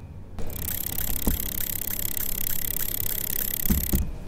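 Edited-in transition sound effect: a steady hiss with an even ticking, about four to five ticks a second, starting about half a second in, with a couple of low thuds.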